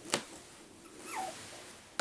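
A four-and-a-half-week-old F1 Cavapoo puppy gives one short whimper, falling in pitch, about a second in. A faint tap comes just before it, near the start.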